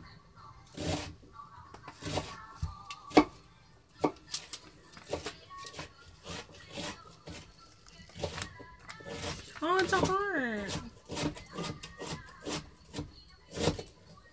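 Scattered small clicks and taps of hard candies being handled and set down on a foil-covered board, with faint music under them. About ten seconds in a short voice-like sound rises and falls in pitch.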